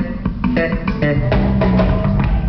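Live band music, with guitar and bass guitar playing over a steady beat.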